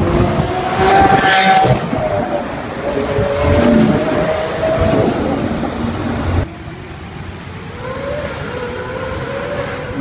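Lamborghini Aventador LP700-4 V12 engine revving loudly as the car drives by, with two loud peaks. About six and a half seconds in, the sound cuts abruptly to quieter street traffic, where another car's engine picks up speed.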